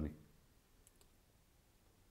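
Near silence: quiet studio room tone, with two faint clicks close together about a second in.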